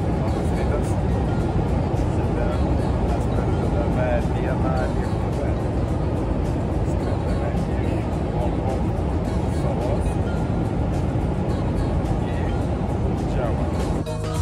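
Steady airliner cabin noise in flight, the engines and airflow making a constant low rush, with a man speaking over it.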